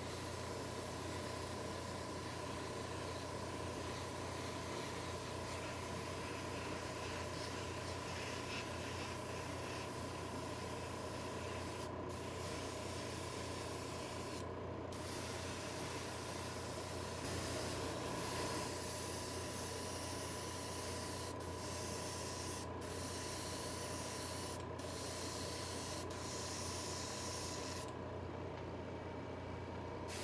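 Airbrush spraying paint in a steady hiss, the air cutting off briefly several times as the trigger is let off, with the longest pause near the end. A steady low hum runs underneath.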